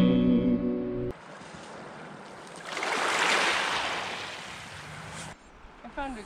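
An acoustic guitar chord rings for about a second and cuts off abruptly. Then a small wave washes up on a pebble beach, a soft hiss that swells and fades over a few seconds.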